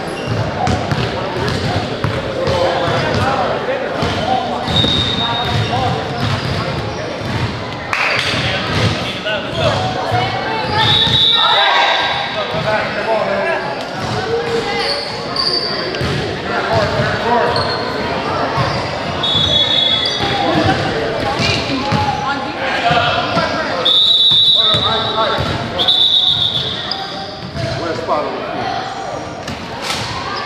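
A basketball being dribbled and bounced on a gym court, with indistinct talking and calling from the crowd echoing in the large hall. Several brief high-pitched squeaks come through, the longest a little after the middle and near the end.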